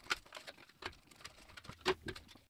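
Small clicks and light rustling of a cardboard SSD retail box being opened and its black plastic drive tray pulled out, with a sharper plastic click near the end.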